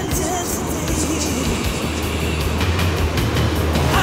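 Ocean surf breaking and washing around people wading with bodyboards, a steady wash of water noise with a low, continuous rumble underneath.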